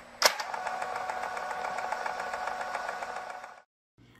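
Film projector sound effect: a click as it starts, then a steady, rapid mechanical clatter with a whirring tone, which stops abruptly near the end.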